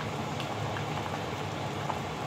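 Pot of pork and vegetable soup simmering on an electric stove: a steady, fine crackle of bubbling over a low hum.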